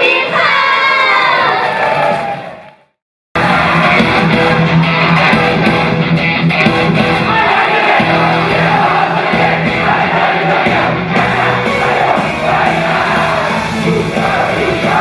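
Shouting crowd voices fade out to a short silence. About three seconds in, a loud, upbeat idol pop song starts over the PA, with singing and fans yelling along.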